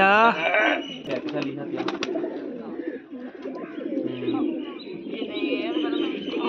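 Domestic pigeons cooing at a rooftop loft, with a few sharp clicks a second or two in.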